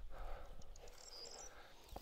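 Faint outdoor ambience with a few short, faint high chirps near the middle.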